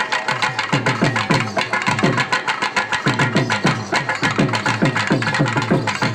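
Live Tamil folk music for a karakattam dance: fast drumming whose strokes each fall in pitch, with a sustained melody line over it.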